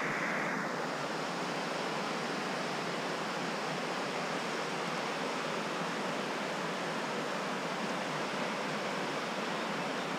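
Steady rushing of a river running over rocks, an even wash of water noise with no distinct splashes.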